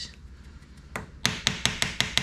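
Small steel hand trowel tapping on sand-cement mix over a ceramic tile floor: a single click about a second in, then a quick run of sharp taps, about six a second.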